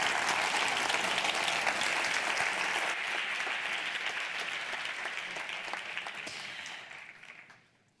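Audience applauding at the close of a panel discussion: steady clapping that gradually weakens after about three seconds and fades out near the end.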